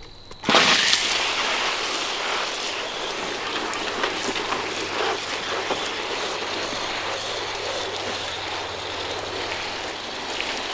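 Water from a hose's watering wand spraying in a shower onto seedling trays and potting soil: a steady rain-like hiss that starts abruptly about half a second in.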